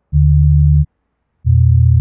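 Telephone DTMF dial tones, generated digitally in Audacity and played back at a greatly reduced speed, so they come out as low, steady hums. Two tones of under a second each, separated by short silences.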